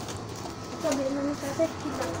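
Brief, indistinct speech over a steady low hum.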